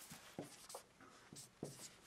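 Dry-erase marker writing numbers on a whiteboard: several short, faint strokes.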